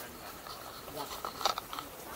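Faint background voices outdoors, with a quick cluster of sharp clicks about a second and a half in.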